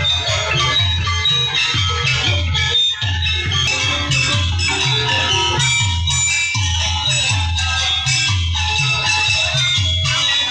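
Music with a steady beat, about two beats a second, under a busy melody of ringing pitched notes.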